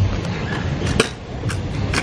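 Stunt scooter wheels rolling on concrete, a steady low rumble, with several sharp clacks of the scooter over the ground about a second in and near the end.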